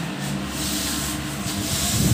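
Hand-rubbing a painted floor with a pad: a continuous rough scraping. There is a short low thump right at the end.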